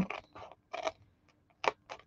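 Small scissors snipping through black cardstock, about five short separate cuts as the blades work along a scored line into a corner.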